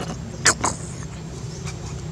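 A steady low engine hum, with two short sharp clicks about half a second in.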